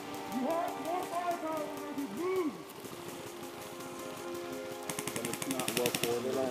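Indistinct voices of players talking, then a rapid burst of clicks lasting about a second near the end, typical of an airsoft gun firing on full auto.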